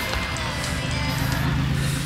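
Street traffic with a steady low engine hum from a passing vehicle, under background music.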